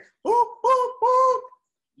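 A man's voice making three short, high "boop" sounds on one pitch, the last held a little longer.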